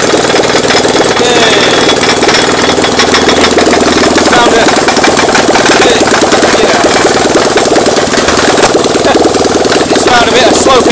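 Generator engine running steadily on a makeshift mounting frame, its rapid, even firing continuing throughout. The engine is vibrating still quite badly, enough to make the frame walk across the floor.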